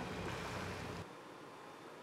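The tail of a documentary soundtrack, music with a wash of noise, fading down and cutting off about a second in. Only faint hall room noise follows.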